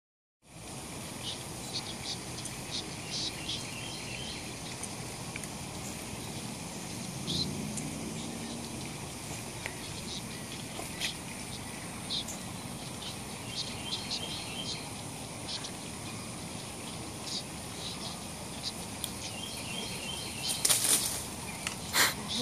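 Outdoor ambience: many short, high bird chirps over a steady high insect drone. A brief loud noise comes about a second before the end.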